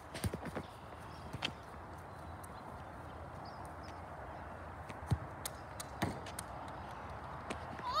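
Soccer ball being kicked across grass: a few scattered thuds and knocks, the sharpest about five seconds in, over a steady outdoor hiss.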